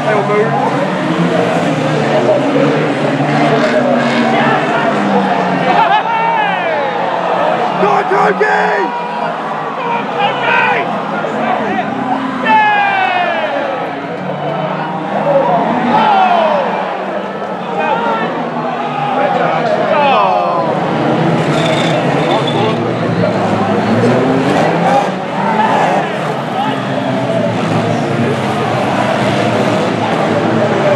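Several banger racing cars running flat out together, their engines revving up and down over each other, with the odd bang of cars colliding.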